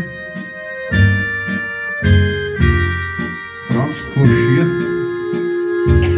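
Accordion played through the Turbosounds app, giving electronic organ-like sounds: held chords and melody notes over bass notes that come in about once a second, with one long held melody note through the second half.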